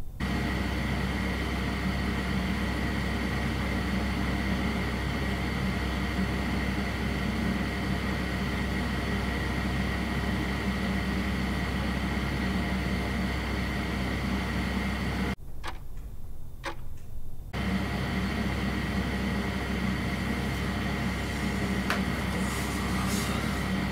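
Steady room noise: a constant hiss with a low hum and a thin high whine. About fifteen seconds in it drops out for about two seconds, and two faint clicks are heard in the gap.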